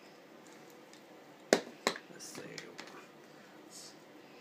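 Two sharp clicks about a third of a second apart as small hand tools are handled, followed by faint handling and rustling sounds.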